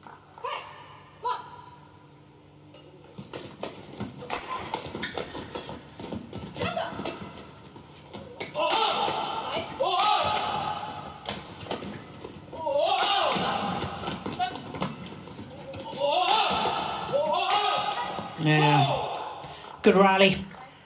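Badminton rally in a large hall: rackets repeatedly striking the shuttlecock, with players' shoes thudding and squeaking on the court, starting about three seconds in.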